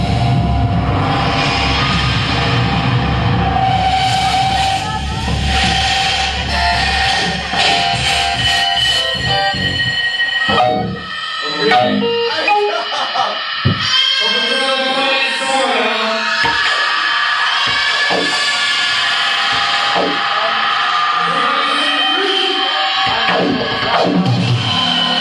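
Live noise music from a band: a loud, dense wall of distorted sound with a heavy bass end for about the first ten seconds, after which the bass drops out and wavering, voice-like pitched sounds carry on over scattered sharp clicks.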